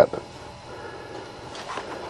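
The end of a spoken word, then faint steady background noise with no distinct event.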